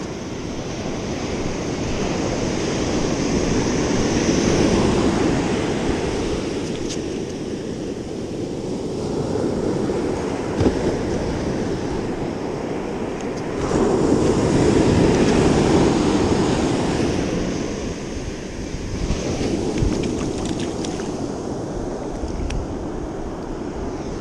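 Ocean surf breaking and washing up a sandy beach, the noise swelling and easing several times as waves come in.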